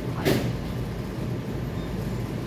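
Steady low background rumble, with one short, sharp noise about a quarter second in.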